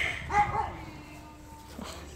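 A person coughs once at the start, then puppies make short pitched whines or yelps.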